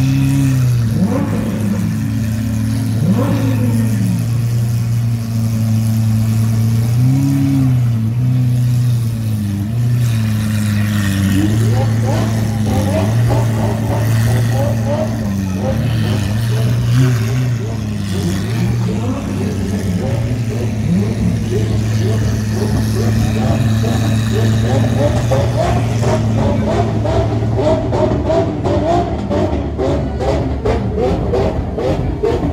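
Lamborghini Aventador SV's V12 idling steadily, with a few short throttle blips in the first few seconds and again about seven seconds in. Crowd chatter rises over the idle from about eleven seconds in.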